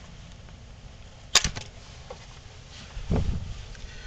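A single sharp plastic click about a third of the way in as the wiring connector is unplugged from the throttle position sensor, followed by a short low thump near the end.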